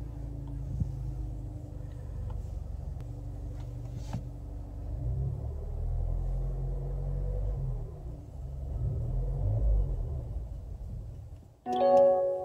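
Mazda 3's engine idling, heard from inside the cabin, then cutting out near the end as the GPS alarm's SMS engine-cut command takes effect. A short dashboard warning tone sounds right as the engine stops.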